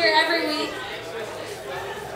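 Speech only: a voice on the microphone for about the first half second, then quieter crowd chatter in the hall.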